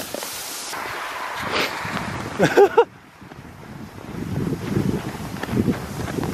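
Plastic sled sliding down a snowy slope: a steady rushing hiss of snow and wind for about three seconds, with a brief child's cry near the end of the run. It then drops away suddenly to a softer crunching in the snow.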